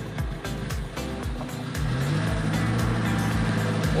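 Mitsubishi Colt T120SS engine running, heard from inside the cabin; about two seconds in its low hum rises in pitch and then holds steady as the car gets under way. Music with a steady beat plays over it.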